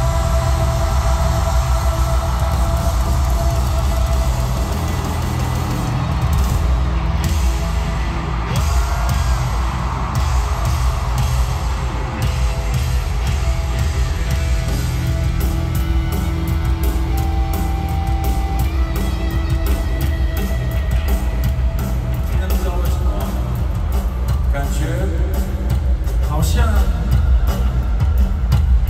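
Live concert music over a stadium PA, heavy in the bass, heard from the stands with crowd noise mixed in.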